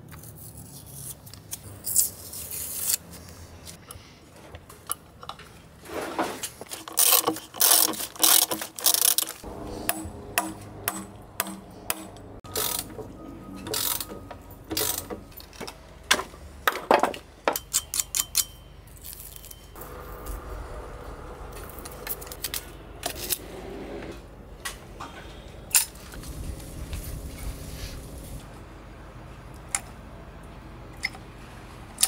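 Hand-tool work sounds: a utility knife scraping and cutting at masking tape, knocks and clatter of tools and hardware on a workbench, and the clicking of a caulking gun pushing out sealant. Many irregular sharp clicks and knocks in clusters, loudest in two bursts, about a quarter of the way in and again past the middle.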